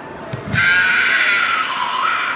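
A young karateka's kiai: a long, high-pitched shout that drops in pitch near the end, preceded by a thump on the mat about half a second in.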